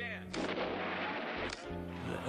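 A burst of gunfire-like noise from a war film playing on a television, lasting about a second, over the held low notes of the song's music.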